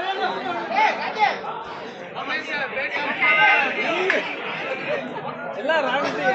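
Many voices talking and calling out at once, overlapping chatter from a crowd of spectators and players, with a louder shout a little after three seconds in.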